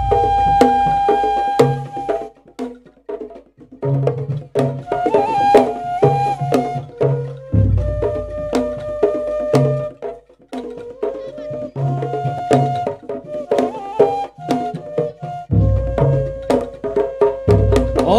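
Javanese pencak silat gending music: a bamboo suling flute holds long melody notes over busy ketipung/kendang hand-drum patterns with deep drum beats. The drumming breaks off briefly twice, about two and a half seconds in and again near the middle, then starts up again.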